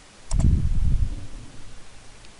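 Two quick computer-mouse clicks about a third of a second in, overlapped by a low rustling rumble that lasts about a second and then fades.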